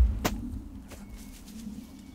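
A disc golf drive: a thump and a sharp snap as the disc is thrown, then a low steady rumble as it flies.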